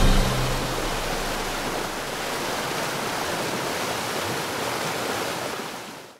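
Large waterfall in heavy spring flow, a steady rushing roar of falling water that fades out near the end.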